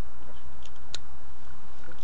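Steady low wind rumble on the microphone, with a few small clicks from harness straps and buckles being handled. The sharpest click comes about a second in.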